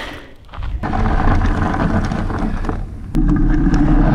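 Off-road wheelchair made from two electric fat-tyre bikes climbing a gravel trail: a steady, rough rumble of its fat tyres and frame on the gravel, picked up by a camera mounted on the chair. It gets louder about three seconds in.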